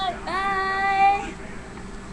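A young girl singing a high, held note for about a second, its pitch rising slightly at the start and then steady.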